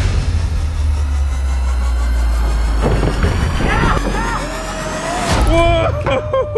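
A car wheel, tyre on an alloy rim, rolling down a plywood slide ramp with a loud, steady low rumble that fades out about five seconds in as it runs off the end. People shout and whoop over it in the second half.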